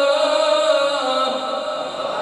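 A man's voice chanting Quran recitation (tilawat) in the melodic style, holding one long, slowly falling note that breaks off about a second and a quarter in.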